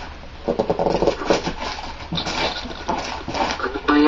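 Gift wrapping paper crinkling and tearing as a present is unwrapped by hand, with a brief vocal sound about half a second in.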